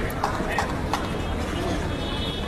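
A quick run of sharp knocks, four or five within about the first second, from play on a hard tennis court: ball bounces and strikes. They sit over the steady murmur of the spectators in the arena.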